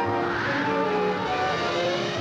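Orchestral film score with sustained string and wind notes; about half a second in, a brief rushing whoosh swells and fades over the music.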